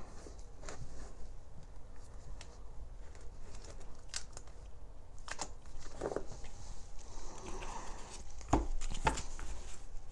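Rummaging: scattered light knocks, clicks and rustles of tarot card decks being fetched and handled, with a few sharper knocks near the end.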